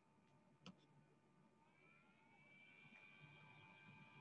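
Near silence, with a faint click under a second in and faint steady high tones coming in about halfway.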